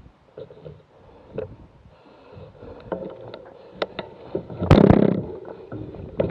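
Bicycle rolling along a rough tarmac lane, with scattered clicks and rattles from the bike and a loud rush of noise lasting about half a second near the end.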